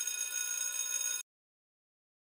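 A bright, bell-like ringing sound effect made of many steady high tones, held about a second and then cut off abruptly.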